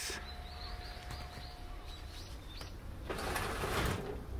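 A small bird chirping outdoors, a quick run of short rising calls, with a faint steady hum beneath; near the end about a second of rustling hiss.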